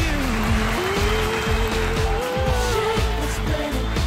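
Dance-pop song with a steady beat, in an instrumental passage without singing. A wash of noise swells in right at the start, and sliding pitched lines run over the beat.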